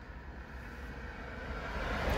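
Low steady rumble and faint hiss of background noise inside a car cabin, with no distinct events.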